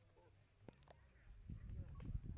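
Near silence: faint outdoor ambience with a single soft click, and a low rumble growing louder near the end.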